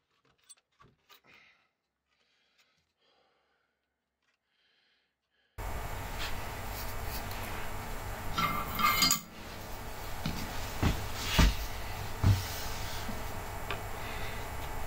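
Faint clicks of a circuit board and its wires being handled inside an opened amplifier's metal chassis. About five seconds in, a steady low hum sets in suddenly, with a scrape and then a few sharp metallic clinks and knocks.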